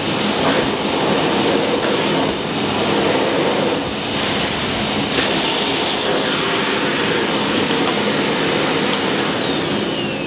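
Miele Blizzard CX1 bagless cylinder vacuum cleaner running on its minimum setting, its brush head worked over a deep-pile rug to suck up oats: a steady rush of suction with a high motor whine. Near the end the whine starts to fall in pitch.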